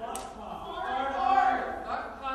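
Only speech: a man talking into a microphone, with one word drawn out near the middle.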